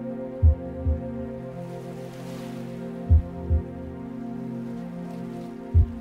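Meditation music: steady, overlapping Tibetan singing bowl tones held under a low double thump, like a heartbeat, that comes about every two and a half seconds.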